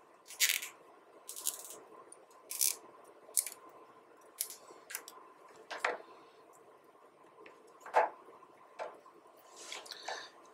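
Black plastic cable tie being pulled through and tightened around a network cable, in about ten short zips and clicks with a pause of about two seconds before the last few.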